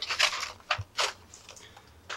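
A few short scrapes and rustles as a black plastic packaging tray of figure accessories is lifted and handled, most of them within the first second.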